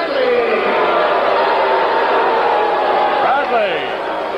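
Ring announcer's amplified voice holding one long drawn-out note over crowd noise, falling away about three and a half seconds in.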